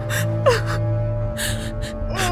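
Women gasping and breathing hard in a struggle: a few short gasps, one with a brief cry sliding down in pitch about half a second in, over a low, steady music drone.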